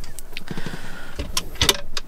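A wooden furniture drawer pulled open by its recessed metal grip: a few sharp clicks from the catch and a couple of dull knocks as it slides out.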